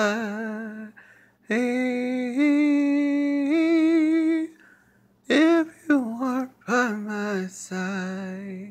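A man singing unaccompanied without words, holding long notes with vibrato that step up in pitch. About five seconds in, he breaks into short, quick gospel-style vocal runs.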